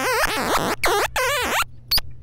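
Rakit Disintegrated Cracklebox, a DIY analog noise synth, sounding through its dry direct output as fingers bridge its metal touch contacts, the skin completing the circuit. It gives a string of short, squealing electronic tones that wobble and bend in pitch, break off and start again several times.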